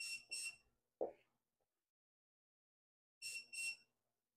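Electric oven beeping its preheat-ready signal: two short high beeps, then two more about three seconds later. A single soft knock about a second in.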